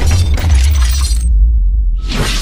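Cinematic logo-animation sound effects: a deep, steady bass rumble under a bright, crashing burst of noise. The burst cuts off sharply just past the middle, leaving only the rumble.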